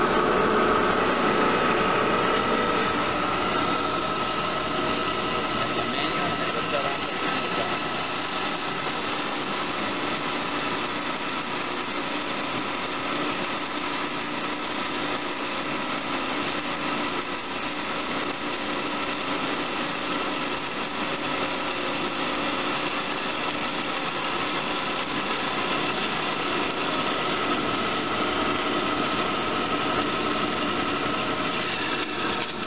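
Amada HA250W horizontal band saw running: a steady mechanical hum and whine, slightly louder in the first few seconds.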